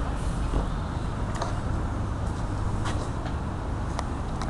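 CTS tram close by, giving a steady low hum and rumble with a few faint clicks.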